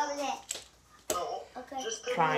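Talking voices, with one sharp click about a second in from a knife knocking against a wooden snap mousetrap as it is baited with peanut butter.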